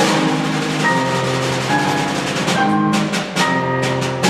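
A massed choir singing sustained chords, accompanied by piano and timpani, with a percussion roll in the first second and drum strokes later on.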